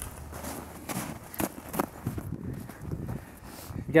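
Footsteps in snow: several uneven steps.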